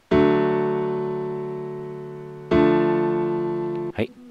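Ableton Live 'Glass Piano' software electric piano playing a D major chord, then about two and a half seconds in a D minor chord, each struck once and held while fading. The two chords differ only in the third, the minor one sounding heavier and darker; the second chord cuts off just before the end.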